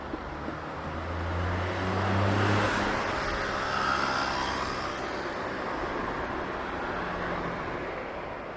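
A motor vehicle driving past on a city street: a low engine hum builds and peaks about two to three seconds in, then its tyre noise fades as it moves away.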